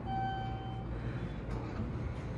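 Arrival chime of a modernized Montgomery traction elevator: a single electronic tone lasting under a second, over a steady low hum.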